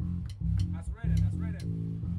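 Electric bass guitar playing a line of low, held notes on its own, with little else from the band audible.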